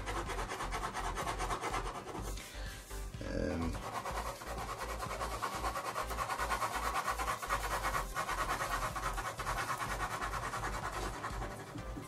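Black ballpoint pen scratching across paper in rapid, short cross-hatching strokes, many per second, laying down dark shading.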